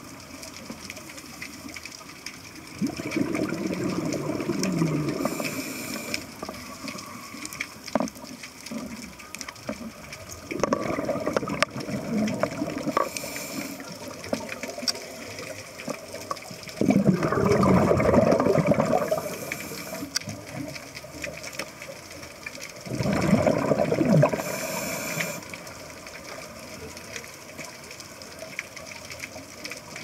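A scuba diver breathing through a regulator underwater: four loud gurgling bursts of exhaled bubbles, each lasting two to three seconds and about six seconds apart, each with a short hiss.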